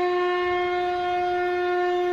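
A wind instrument holding one long, steady note with no break or change in pitch.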